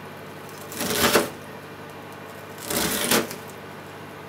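Chef's knife mincing onion on a plastic cutting board: two short bursts of quick knife strikes through the onion onto the board, about a second in and again near three seconds.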